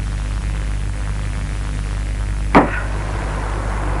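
Steady hum and hiss of an old tape recording, broken about two and a half seconds in by a single sharp knock: a hammer striking hardened concrete in a heavy wheelbarrow to break it out.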